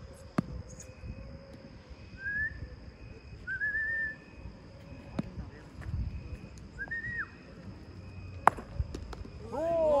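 Sharp knocks of a cricket bat striking the ball, a few times, the loudest near the end, with three short rising whistles in between. A man's shout starts just before the end.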